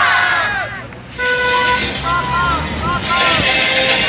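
A crowd's chant breaks off, and about a second later a horn sounds one short steady blast, followed by several short toots that rise and fall in pitch over crowd noise.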